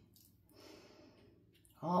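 A soft breath out, like a faint sigh, about half a second in, then speech begins just before the end.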